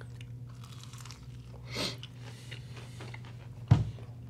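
Two people biting into and chewing crunchy breaded boneless chicken wings. The chewing is faint, with a brief crunch about two seconds in and a short, sharp knock near the end.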